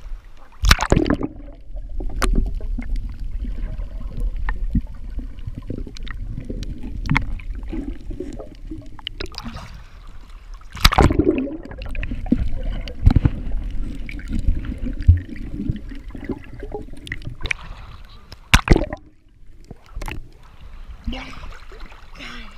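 Water sloshing and gurgling around an action camera held at and under the surface, with a muffled underwater rumble. Loud splashes break through about a second in, near the middle and a few seconds before the end.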